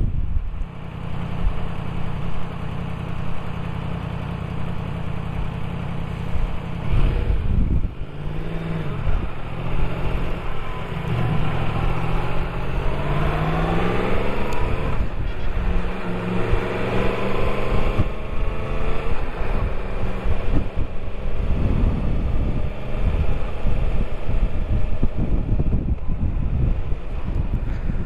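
Motorcycle engine pulling away and accelerating, its pitch climbing through one gear, dropping at a change about fifteen seconds in and climbing again, over a steady rumble of wind and road noise.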